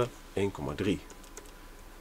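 Faint light taps and clicks of a stylus on a drawing tablet while '1,3' is written out, under a brief spoken phrase.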